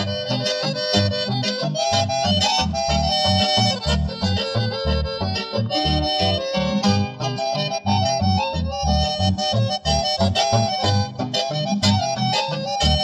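Paraguayan conjunto music without singing: an accordion plays the melody over a steady, pulsing low bass-and-guitar accompaniment.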